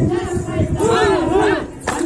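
A group of voices shouting calls together, twice rising and falling near the middle, over a steady rapid beat, breaking into the folk song. A single sharp knock sounds just before the end.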